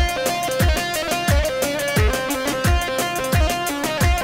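Amplified Kurdish halay dance music: a melody of held notes over a deep drum beat that drops in pitch, about three beats every two seconds.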